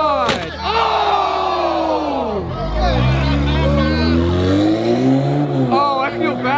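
Crowd shouting, then a sports car's engine revving up, rising steadily in pitch for about two seconds from midway as the car pulls away off the curb.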